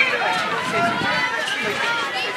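Several voices of netball players and courtside spectators calling out and talking over one another.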